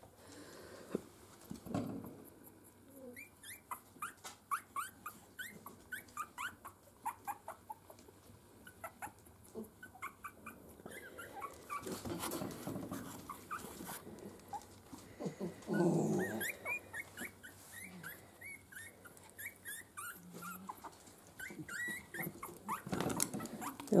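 Miniature Schnauzer puppies squeaking, many short high squeaks a second, rising and falling in pitch. A few louder, lower sounds come in about halfway through and again near the end.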